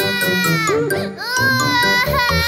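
Two long baby-like crying wails, each falling in pitch at its end, over children's song music.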